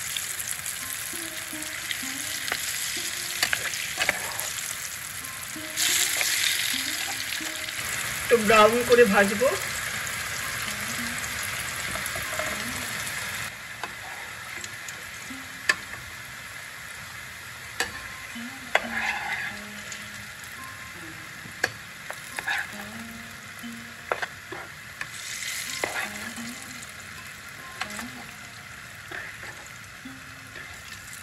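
Food sizzling in hot oil in a pan, a steady hiss that is louder for several seconds near the start, with a utensil stirring and clicking against the pan now and then.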